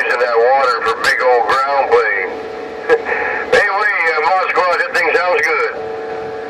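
Voices of distant stations coming through a Uniden Grant LT CB radio's speaker on channel 11. The voices are thin and too garbled to make out, with steady tones under them and frequent static crackles.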